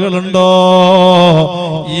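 A man's voice chanting in a sung, melodic style, holding one long, slightly wavering note for about a second before breaking into shorter syllables.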